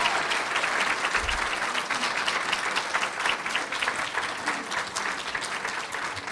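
Audience applauding, a dense run of hand claps that slowly dies down toward the end.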